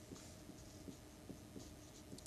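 Faint scratching of a felt-tip marker writing on a board, a few short strokes.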